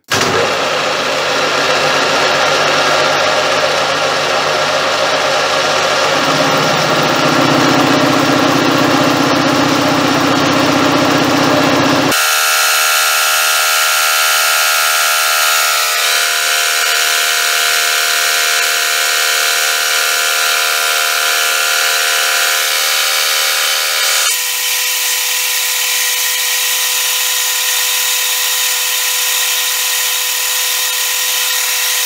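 Metal lathe running, its spinning chuck and workpiece under a shop-made radius-turning tool, a loud steady machine whine made of many tones. The sound changes abruptly twice, about twelve and twenty-four seconds in.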